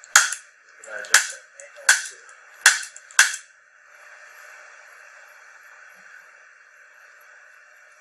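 Handheld spring-loaded chiropractic adjusting instrument firing against the upper back: five sharp clicks, about one every three-quarters of a second, stopping about three and a half seconds in. A faint steady hum follows.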